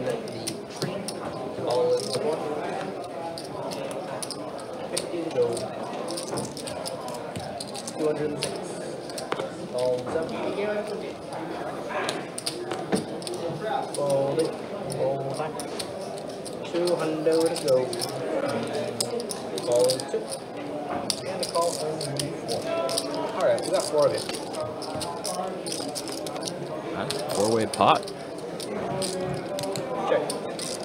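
Low talk of voices around a poker table, with the repeated light clicking of poker chips being handled and stacked.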